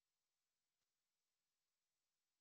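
Near silence, with one very faint click a little before the middle.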